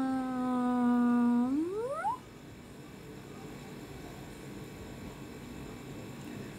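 A child's voice holding one long, level hummed note, then sliding steeply up in pitch and breaking off about two seconds in.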